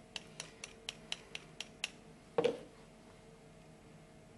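Small metal spatula tapped lightly against the rim of a small plastic chemical jar: eight quick clicks at about four a second, then a single louder knock a little after halfway.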